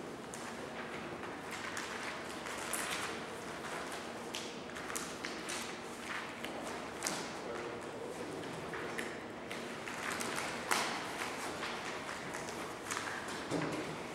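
Irregular light taps, knocks and paper handling at tables in a quiet room, with footsteps on a tiled floor, sharpest about three, seven and eleven seconds in.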